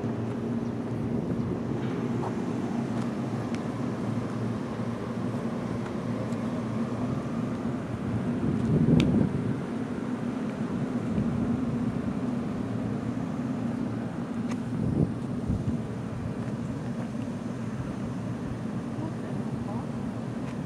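A JR 113 series electric multiple unit standing at a station platform, giving a steady low hum, with a brief louder rush about nine seconds in.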